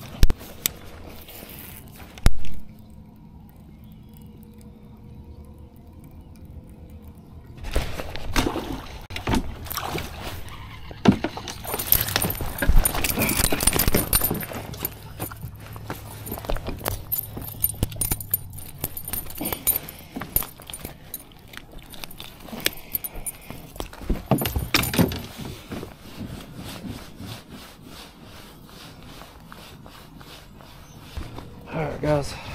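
Fishing tackle being handled in a kayak: a baitcasting reel, rod and metal-bladed spinnerbait giving sharp clicks and jangling rattles. After a quiet stretch near the start, a busy run of clicks, rattles and rustling goes on from about eight seconds in to about twenty-five seconds.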